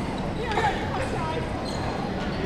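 Sounds of badminton play on a wooden sports-hall court: sneakers squeaking briefly on the floor about half a second in, over a steady hall din with voices.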